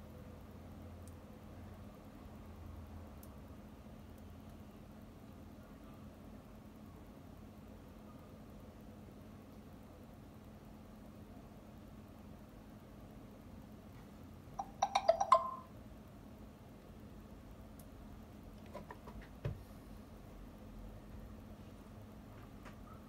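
Scalpel blade scraping and cutting at a small piece on an iPhone 7 Plus logic board: a quick cluster of sharp clicks and scrapes about two-thirds of the way through, then a few fainter clicks, over a quiet steady hum.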